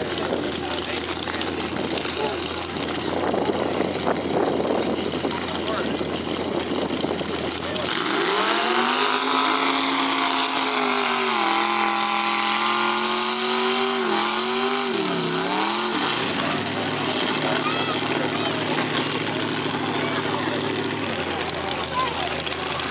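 Mud-bog pickup truck engines: a steady low idle, then about eight seconds in an engine revs up hard. It holds high for several seconds, dips and surges twice, and falls back to a low idle.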